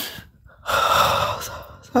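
A woman's loud breaths close to the phone's microphone: one trails off just after the start, and another, lasting about a second, follows half a second later.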